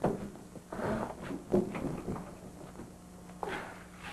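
An oven door and a casserole dish being handled: a few scattered clunks and knocks, the dish being taken out burnt.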